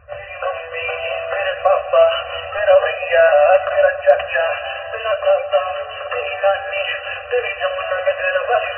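A song with processed, synthetic-sounding singing. It sounds thin and boxed-in, with no bass and no treble.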